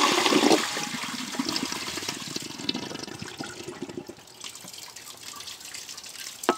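1927 Standard Devoro toilet flushing: the loud rush of water drops off sharply about half a second in, leaving quieter trickling and dripping that fades.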